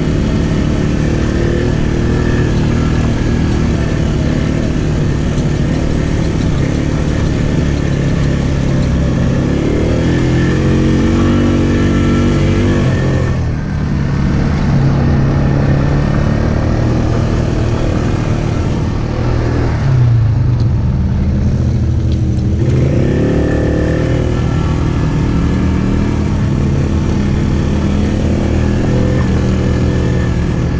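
ATV engine running under way on a rough dirt trail, its pitch rising and falling with the throttle. About halfway through it eases off for several seconds, dropping in pitch, then picks back up.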